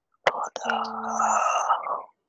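A person whispering under their breath, with no clear words, starting about a quarter second in and lasting until the end.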